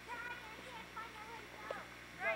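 High-pitched children's voices calling out across the snow in short, wordless bursts, with rising and falling pitch.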